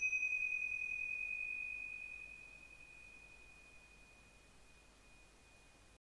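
A single high-pitched, bell-like chime tone ringing out after one strike and fading away over about four seconds.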